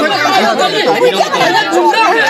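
Several villagers talking loudly over one another in a heated argument, voices overlapping so that no single speaker stands out.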